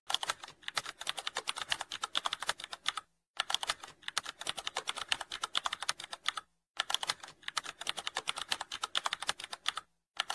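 Computer keyboard typing sound effect: rapid keystroke clicks, stopping briefly twice, as text is typed onto the screen.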